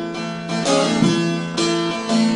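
Bağlama (saz) playing an instrumental phrase between the sung lines of a Turkish folk song, its plucked notes ringing on, with new notes struck about half a second and a second and a half in.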